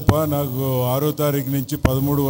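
A man's voice through a handheld microphone and PA, in long, evenly pitched, chant-like phrases, with two sharp clicks, one near the start and one just before the end.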